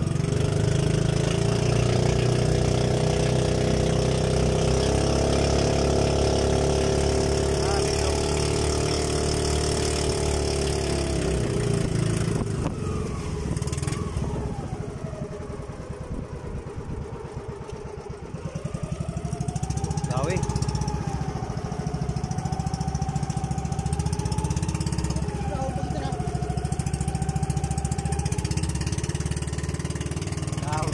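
The engine of a small outrigger fishing boat running under way. About twelve seconds in it is throttled down, slowing so its separate strokes can be heard, and a few seconds later it speeds back up and runs on with a slightly wavering pitch.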